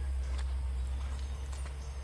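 Footsteps in Crocs on a dirt road, a few soft, evenly spaced steps over a steady low rumble.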